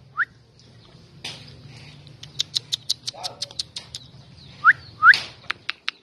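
Small birds chirping: a short rising whistled call, then a quick run of high chirps at about six a second, then two louder rising whistled calls near the end, over a faint low hum.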